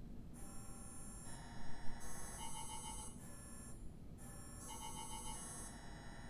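Soft background music of bell-like electronic chime tones, changing chord about once a second in a repeating phrase with short pulsing notes.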